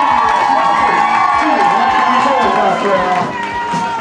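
A small crowd of people cheering and shouting together, many voices overlapping, with a steady high tone running underneath.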